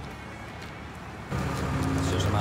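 Faint outdoor background noise, then a little past halfway a steady low hum starts abruptly and carries on.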